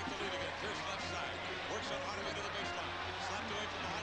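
Low, steady audio of a televised basketball game clip playing in the background: a commentator's voice over court and arena sound, with a basketball bouncing.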